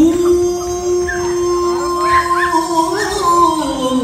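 Qawwali singing: a male voice holds one long sustained note, then wavers and slides down in pitch near the end, with harmonium accompaniment.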